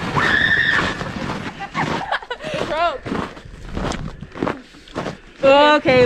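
Young voices shrieking and laughing without words, with short bursts of noise between the cries; the loudest is a long, wavering shriek near the end.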